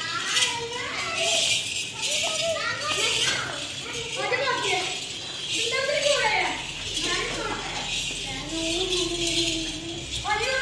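Children's voices calling and chattering excitedly, overlapping, with some adult voices among them.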